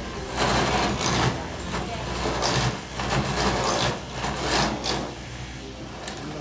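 Electric clog-carving copy machine running with a steady motor hum, its cutters biting into wood in about five rough bursts that ease off near the end.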